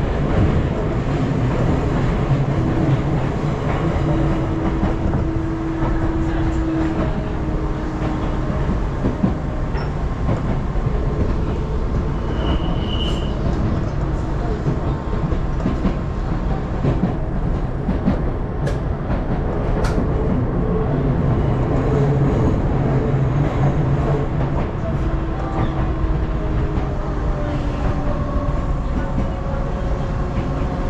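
Hakone Tozan Railway train running, heard from on board: a steady rumble of wheels on the rails, with a brief high tone about twelve seconds in and a few sharp clicks a little later.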